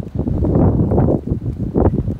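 Wind gusting across the camera's microphone: a loud, low rumble that swells and dips with each gust.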